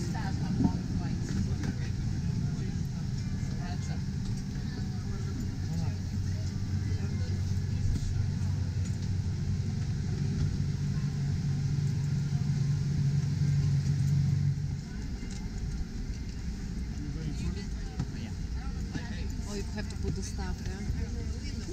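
Low steady hum of a Boeing 737-800 cabin at the gate during boarding, with a pair of low droning tones that cut off suddenly about 15 seconds in, under indistinct passenger chatter.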